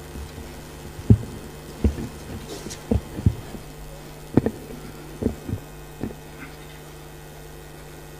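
Steady electrical hum from a public-address system, with a series of irregular low thumps over the middle of the stretch, the loudest about a second in.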